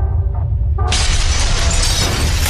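Logo-intro sound effects: a steady deep bass rumble, then just under a second in a sudden shattering crash that carries on as a dense spray of breaking-debris noise.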